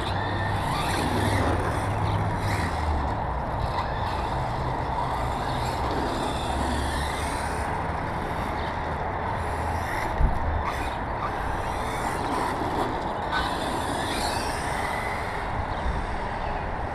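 Steady outdoor rushing noise with uneven low rumble, like wind on the microphone, over the faint rising and falling whine of an RC car's electric motor; a single sharp thump about ten seconds in.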